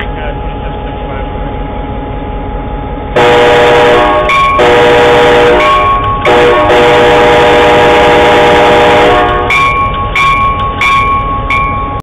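A CSX GP38-2 locomotive's Nathan K5LA five-chime air horn (K5LAR24) blowing a loud chord. It starts suddenly about three seconds in, sounds in long blasts with brief breaks, then gives a series of short toots near the end. Before the horn, the locomotive's diesel engine idles steadily.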